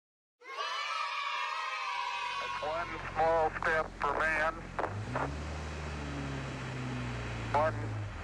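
A 1993 Ford Aerostar's engine runs with a steady low hum that swells about five seconds in as the van runs in the garage. A person's voice is heard briefly over it a couple of times.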